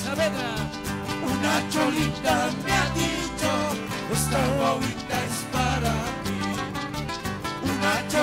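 Live Andean folk band playing a huayño dance tune: acoustic guitar and shaken maracas over a repeating bass line and a steady beat, with a wavering melody line on top.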